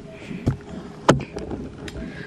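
Handling noise from a handheld camera being moved: low rumbling with a few sharp clicks and knocks, the loudest about a second in.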